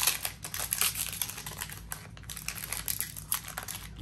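Foil Yu-Gi-Oh booster pack wrapper crinkling and crackling as it is torn open by hand and the cards are pulled out, in a rapid run of crackles that is densest in the first second.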